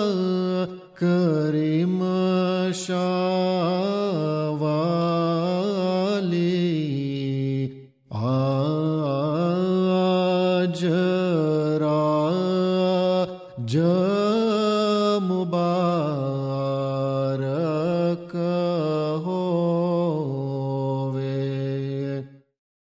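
A single male voice chanting a slow, melismatic devotional melody in long held, wavering notes, breaking off briefly for breath about a second in, around eight seconds and again around thirteen seconds.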